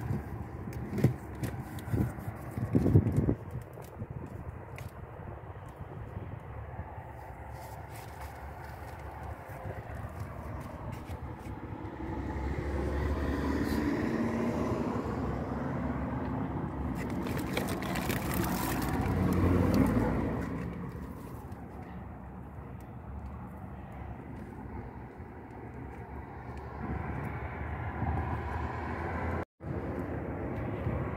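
Outdoor background noise, with a few sharp clicks in the first few seconds and a broad rushing noise that swells up through the middle and fades again.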